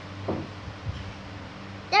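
A steady low hum over a quiet room, with a couple of faint short noises, then a girl's voice says 'There' in a sweeping sing-song near the end.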